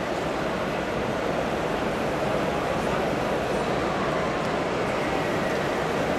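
Steady din of a busy exhibition hall, with many people's voices blending into continuous background chatter.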